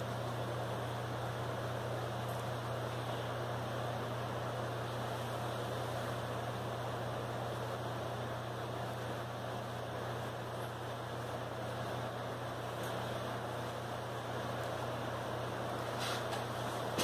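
Steady low electrical or fan hum with an even hiss over it, unchanging throughout.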